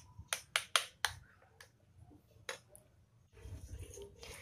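Metal spoon tapping and scraping against a stainless-steel mixer jar while blended carrot puree is scraped out into a bowl: a quick run of sharp taps in the first second, a couple more later, then quiet.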